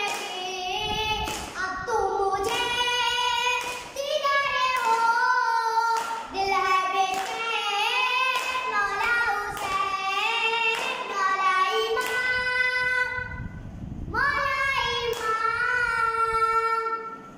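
A boy chanting a noha, a Shia lament, solo and unaccompanied in a high voice with long held notes. Sharp slaps about once a second keep the beat: matam, his hand striking his chest.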